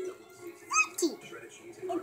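Mostly quiet, with one short high-pitched vocal sound from a young child a little under a second in, followed by a brief falling squeak.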